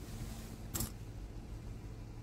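Quiet car-cabin background: a low steady hum with faint hiss, broken by one short click about three-quarters of a second in.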